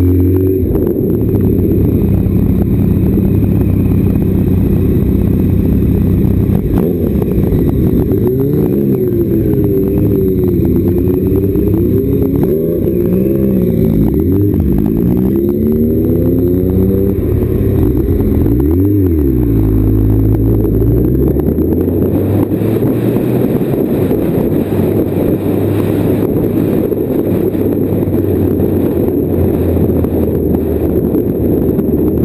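Motorcycle engine heard from on the bike, its pitch rising and falling repeatedly with the throttle and gear changes as it pulls away. In the last third it settles into a steadier low drone.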